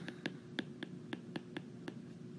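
Stylus tip tapping and clicking on an iPad's glass screen during handwriting, a string of light, sharp clicks about four a second.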